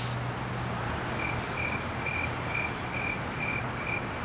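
Cricket chirping, dubbed in as the stock gag for an awkward silence: a steady run of short high chirps, a little over two a second, starting about a second in, over faint background noise.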